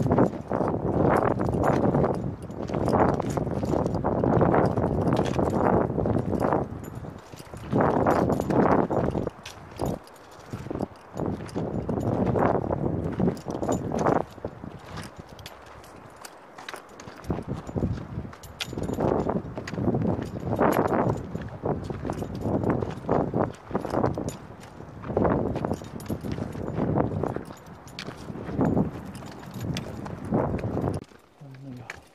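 Footsteps on rock and gravel with the click of trekking poles, as climbers walk uphill: a run of uneven scrapes and crunches with sharp ticks between them.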